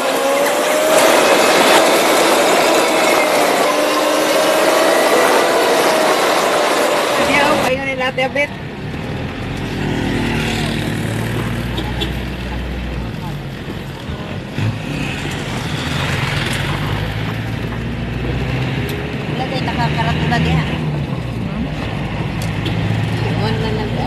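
A wavering tone over loud hiss for the first seven seconds or so, then a sudden cut to the steady low rumble of a moving vehicle's engine and road noise heard from inside the cabin, with faint voices.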